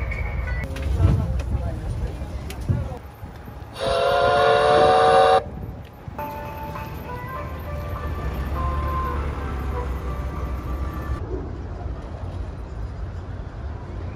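A tourist road train's horn sounds once, a chord of steady tones lasting about a second and a half, over the low rumble of the vehicle and people's voices.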